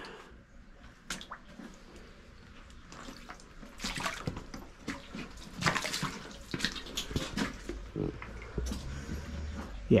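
Boots wading through shallow creek water over loose rocks: irregular splashes and scrapes, sparse at first and busier from about four seconds in.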